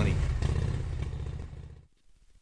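A low engine rumble, with a fast even pulse, fades away steadily and dies out just before the end, leaving near silence.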